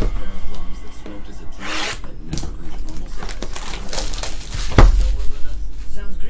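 Background music under handling of sealed cardboard trading-card boxes on a table. A short rustle comes about two seconds in, and a sharp knock as a box is set down comes near five seconds.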